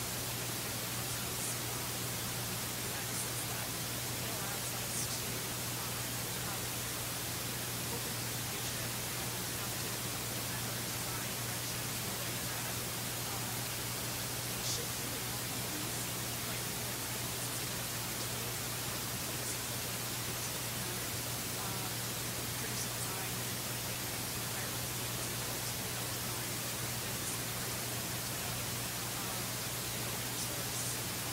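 Steady hiss of the recording's background noise with a constant low electrical hum, and a few faint ticks.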